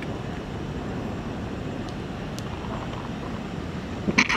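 Steady outdoor background rumble, with two faint short clicks near the middle.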